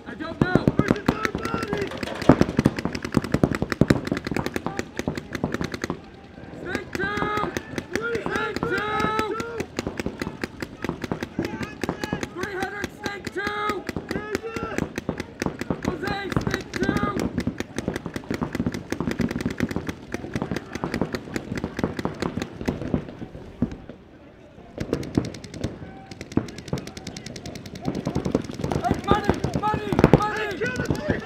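Paintball markers firing in rapid strings, many shots a second, from several guns at once, with brief lulls about six seconds in and near twenty-four seconds. Voices call out over the firing.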